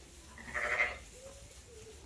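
A sheep bleats once, a short call of about half a second.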